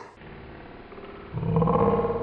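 A deep, drawn-out, growl-like processed sound added in editing, low and dense, swelling much louder over the last half-second or so.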